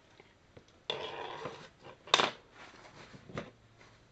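Hobby supplies being handled on a workbench: a brief rustle about a second in, then a sharp clack of a hard object, likely the plastic water cup, being set down, followed by a few lighter clicks.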